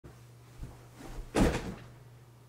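A few soft knocks, then a louder thump with a short rustle about one and a half seconds in, as a person sits down heavily in an office chair.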